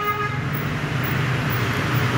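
Road traffic: a horn-like tone fades out just after the start, then a steady vehicle rumble and hiss continues.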